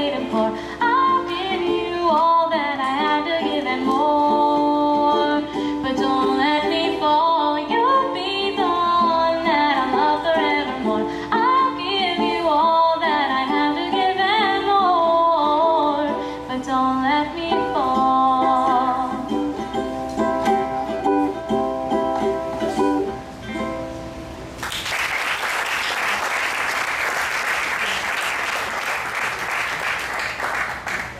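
Live song with a strummed ukulele and singing, which ends about 24 seconds in and gives way to audience applause.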